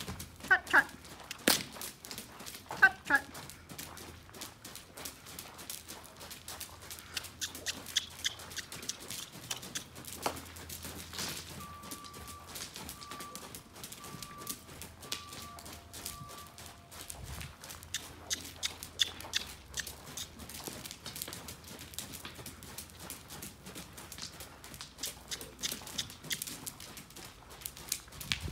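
Hooves of a shod horse striking soft arena footing at a trot and canter: a steady run of short, fairly soft beats.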